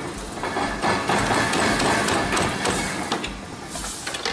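Spring-mounted vibrating screen shaking round metal pieces across its wire-mesh deck: a dense, continuous metallic clatter.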